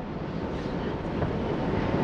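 Steady low rumbling background noise in a large room, with no distinct event.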